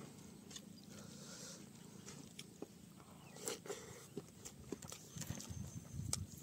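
Faint close-miked eating sounds: a mouthful being chewed, with short wet mouth clicks and smacks that come more often in the second half, and fingers working rice and curry on a steel plate.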